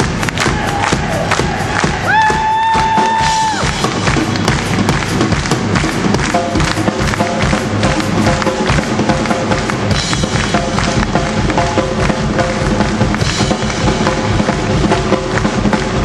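Live rock-and-roll band playing loudly, with a drum kit keeping a fast, steady beat, and one long held note about two seconds in.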